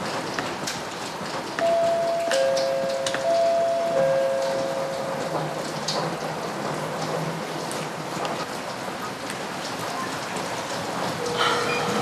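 Steady rain-like hiss, with a few light knocks on a door near the start and soft held music notes from about two seconds in.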